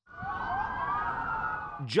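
Several police car sirens wailing at once, their overlapping pitches sweeping up and down; the sound cuts in suddenly after silence.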